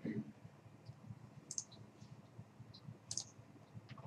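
A few faint computer mouse clicks, one about a second and a half in and another about three seconds in, with a soft low knock at the very start.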